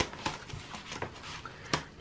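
Plastic envelope pages of a ring-binder cash wallet being flipped and handled: light rustling with a few soft clicks and one sharper click near the end.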